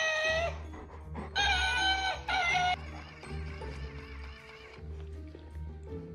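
Background music with an electronic plush toy cat meowing twice: a short meow at the start and a longer one about a second and a half in.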